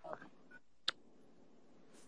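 A single sharp click just under a second in, over faint steady background hiss during a lull in an online voice chat.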